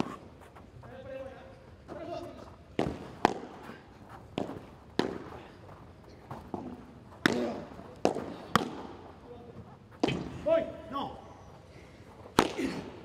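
Padel rally: the ball struck by solid padel rackets and bouncing off the court and glass walls, about ten sharp knocks at irregular intervals. A man's voice speaks briefly near the start and near the end.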